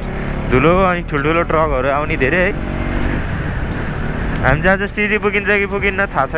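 Bajaj Pulsar NS200 single-cylinder motorcycle engine and wind noise while riding along a highway and gaining speed. A sung vocal line sits over it and drops out for about two seconds in the middle, leaving only the ride noise.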